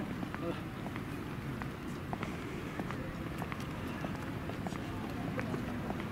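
Footsteps on a paved sidewalk, irregular sharp clicks about two a second, over steady street noise, with passers-by talking.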